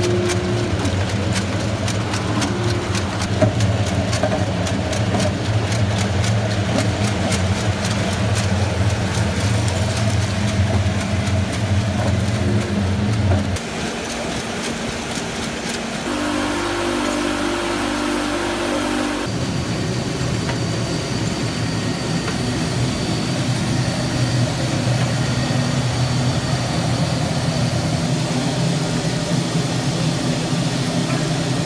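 Electric motors of a potato chip processing line running steadily: a potato slicing machine and slice conveyors, with a constant low hum. A fine rapid ticking runs through the first half, and the hum changes in pitch twice, about 13 and 19 seconds in.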